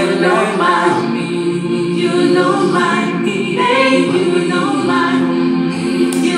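A choir singing a cappella in gospel style, voices holding sustained chords that move to new harmonies every second or two.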